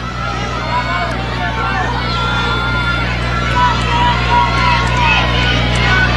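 Track-meet crowd in the stands cheering and shouting during a relay race, many voices overlapping and growing a little louder toward the end, over a steady low hum.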